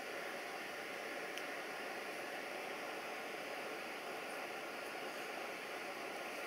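Steady hiss of background noise with faint steady tones running through it and no distinct event, apart from a faint tick about a second and a half in.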